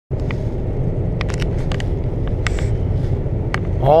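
Road noise inside a moving car: a steady low rumble of engine and tyres, with a scattering of short light ticks and rattles. A man's voice begins right at the end.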